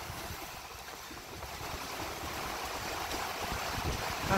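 Storm wind blowing as a steady rushing noise, with gusts buffeting the microphone in irregular low rumbles.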